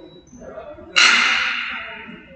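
A sudden sharp, loud sound about a second in, echoing through the gym and dying away over about a second.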